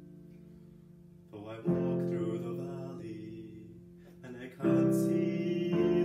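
Piano chords, each struck and left to ring and fade away: a soft lead-in and a chord about a second and a half in, another near five seconds, and a further chord just before the end.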